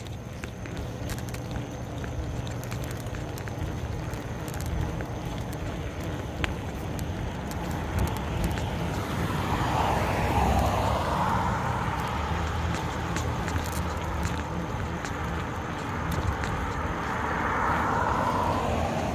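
Steady rumble and rushing noise of a bicycle ride on pavement, picked up by a handheld phone, growing louder about halfway through.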